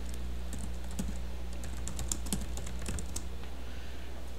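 Typing on a computer keyboard: a run of quick key clicks, thickest in the second half, over a steady low hum.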